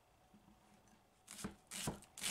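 Near silence, then a few quick crunching cuts in the second half: a chef's knife slicing through a raw onion onto a wooden cutting board.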